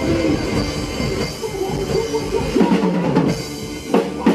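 Acoustic drum kit played hard along to a recorded rock song: snare, kick and Zildjian cymbal hits over the band's track, with a brief thinning of the bass drum a little past halfway before heavy hits come back near the end.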